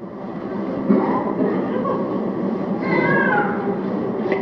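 Audience applauding, swelling in over the first second and holding steady, with a voice calling out above it about three seconds in.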